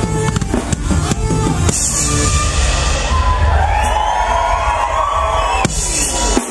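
Live rock band with drum kit playing a driving beat, which breaks about two seconds in into a held, ringing chord under a cymbal wash with wavering sustained notes. Sharp drum hits come back in near the end.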